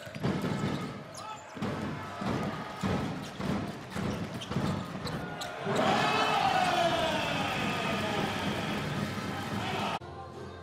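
Basketball dribbled on a hardwood court, with bounces and knocks over arena crowd noise. About six seconds in, as a shot goes up at the basket, the crowd breaks into a loud, sustained cheer.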